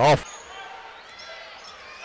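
Faint game sound from the arena floor: a basketball being dribbled on the hardwood court under the hall's background noise.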